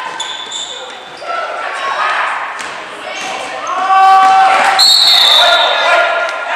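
Indoor basketball game sounds in a gym hall: voices calling out, shoes squeaking and the ball bouncing on the hardwood. Near the end a steady high whistle sounds as play stops.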